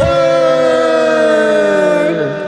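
A single loud siren-like tone with a stack of overtones. It gliding slowly and steadily downward in pitch, just after a quick sharp downward swoop at the start.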